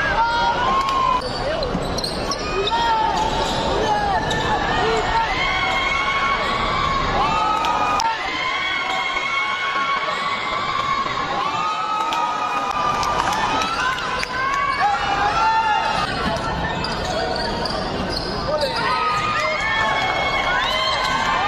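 Live basketball play on a hardwood court: sneakers squeaking in short chirps, the ball bouncing, and shouts and chatter from players and the crowd.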